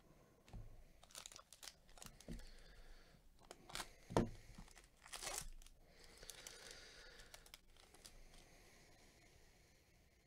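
Bowman Chrome trading cards handled with cotton-gloved hands: slick chrome cards sliding and clicking against each other with papery rustling as the stack is flipped to the next card. The loudest is a sharp tap a little past four seconds, then a longer rustle that fades off.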